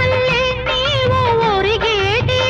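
Telugu film song music: one melody line winding up and down in ornamented slides over a steady low rhythm accompaniment.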